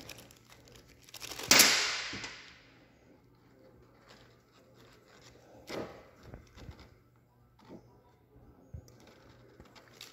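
Handling noise of snowmobile fuel-pump parts and fuel line on a workbench: a sudden loud noise about one and a half seconds in that dies away over about a second, then a few faint clicks and taps as the parts are handled.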